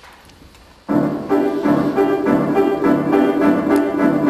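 Grand piano accompaniment starting abruptly about a second in: repeated chords, about three a second. It is the instrumental introduction before the singer comes in.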